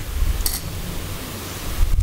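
Steady noise with a low rumble and no speech, with a brief high hiss about half a second in.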